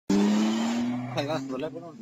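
Car tyres skidding over a running engine, as in a drift. It starts suddenly and fades over the first second. Then a voice says "there".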